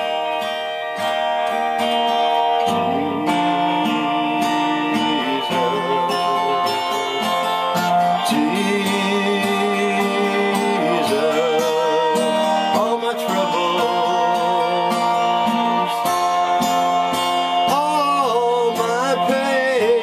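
Acoustic guitar strummed steadily while a man sings a slow country-gospel song over it, his held notes wavering with vibrato.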